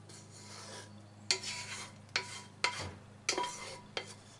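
Spatula scraping sauce out of a frying pan into a bowl: a soft pour, then about four quick scraping strokes starting just past a second in.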